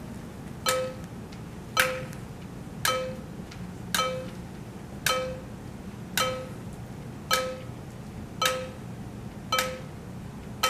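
A sharp percussive tick with a short pitched ring, like a wood block or small chime, repeating at an even pace about once a second, nine times.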